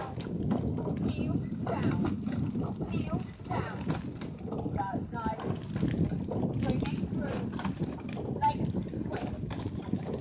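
Wind and motion rumbling on a moving phone microphone, with irregular rattling knocks and faint, indistinct voices over it.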